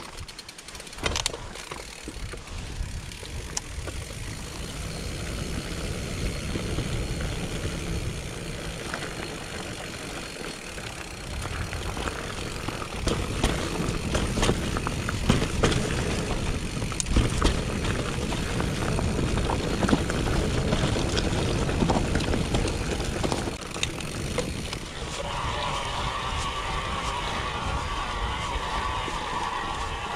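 Mountain bike rolling downhill over a dirt forest trail: tyre rumble with rattling clicks and knocks from the bike, rougher and louder from about halfway through. A steady buzz joins in over the last few seconds.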